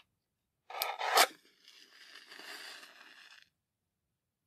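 A green-tipped Diamond wooden match struck along the striking strip of the box: a short rough scrape that ends in a sharp flare of ignition about a second in, then a softer hiss as the head burns for about two seconds before it falls quiet.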